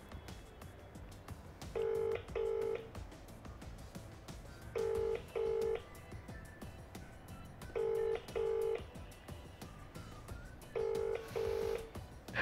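Ringback tone of an outgoing call played through a phone's loudspeaker: a double ring of two short steady tones, repeating about every three seconds, four times, as the called phone rings unanswered.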